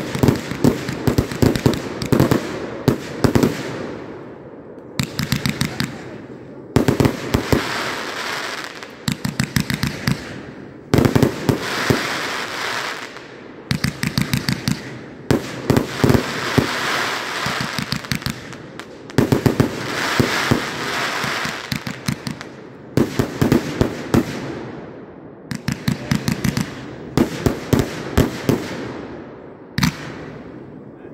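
A 309-shot consumer firework cake (Corona Liquidator) firing. Quick volleys of sharp shots come every two to four seconds, and each volley is followed by a couple of seconds of crackle from the bursting stars.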